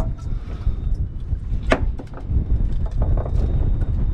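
Wind buffeting the microphone, a steady low rumble that rises and falls. A few light knocks and a sharp click, the clearest about halfway through, come as a fish is worked out of a landing net.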